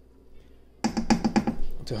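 Wooden spoon knocking in quick succession against a stainless steel saucepan while stirring and lifting out of thick porridge. The knocks start suddenly about a second in, with a man's voice over them.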